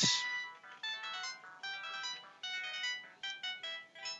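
An electronic melody of short, plain beep-like notes stepping quickly from pitch to pitch, several notes a second.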